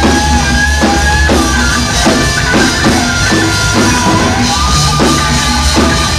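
Live punk rock band playing an instrumental passage: a high, sustained lead line over bass and a steady drum beat of about two hits a second, with no vocals.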